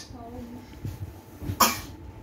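A single short, sharp cough about one and a half seconds in, from someone in a household where everyone has a cough; a faint bit of voice is heard just before it.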